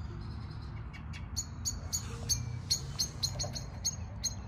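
Common blackbird giving a rapid series of short, sharp high calls, about four a second, growing stronger from about a second in: the chinking that blackbirds make when settling to roost at dusk.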